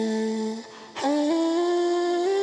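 Melodic lead of a boom bap hip-hop beat, with no drums yet: one held note breaks off just past half a second in, then after a brief gap the line returns, moving up and down in steps.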